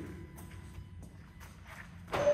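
Faint footsteps of someone walking away from a parked car, over a low steady background hum.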